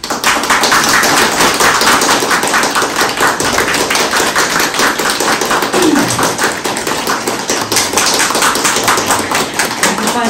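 A small group applauding, starting suddenly and keeping up a steady, dense patter of claps.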